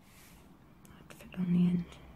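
A woman's short, closed-mouth hum, an "mm" held for under half a second about one and a half seconds in. It is preceded by a soft breath and a few faint clicks.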